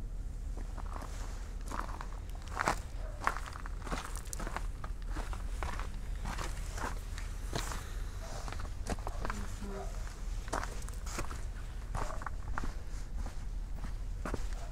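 Footsteps walking on grass, about two steps a second, over a steady low rumble.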